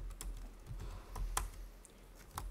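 Typing on a computer keyboard: a short, irregular run of separate key clicks as a shell command is entered.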